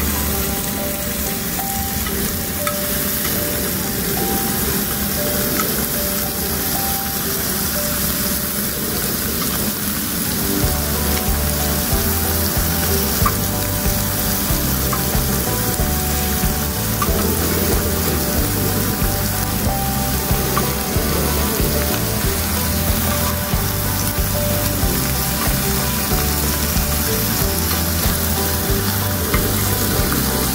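Thick-cut pork belly sizzling and frying in its own fat on a cast-iron pot-lid griddle, a steady hiss throughout. Low bass notes of background music run underneath, dropping away for the first ten seconds or so.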